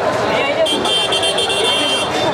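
A vehicle horn sounds as one steady high tone, starting about half a second in and held for about a second and a half, over the chatter of a crowded street.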